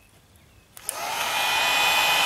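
A Wagner heat gun switched on at its low setting: a click about three-quarters of a second in, then its fan spins up into a steady blowing noise with a faint whine.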